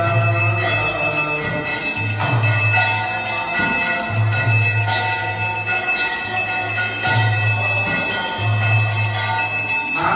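An arati hand bell ringing continuously, over devotional kirtan music.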